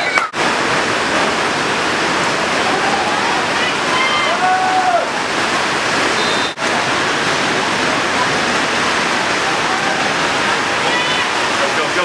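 Steady loud rushing hiss of outdoor noise over a sports field, with faint distant voices calling out now and then. The sound drops out for an instant twice.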